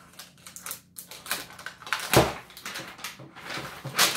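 Crinkling and tearing of a plastic wrapping band being pulled off a plastic toy container, a run of small crackling clicks, with one loud thump about halfway through.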